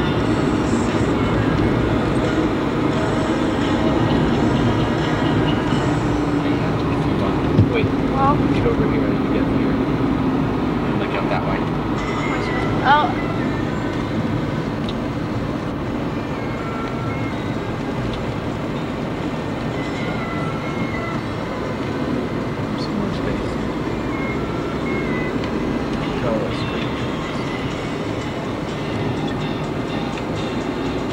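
Road and engine noise heard inside a moving car's cabin: a steady rumble and hiss, with two brief knocks partway through.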